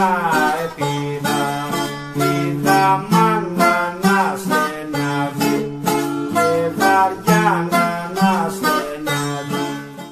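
Bouzouki and acoustic guitar playing a Greek tune together: quick plucked bouzouki notes, some sliding in pitch, over a steady strummed guitar accompaniment. The music drops away right at the end.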